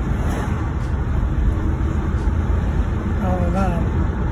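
Steady low rumble of road and engine noise inside a moving car's cabin. Near the end a person's voice is heard briefly, a short wavering sound without clear words.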